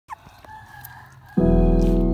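A faint rooster crow, then about 1.4 s in background music starts suddenly with a loud held chord.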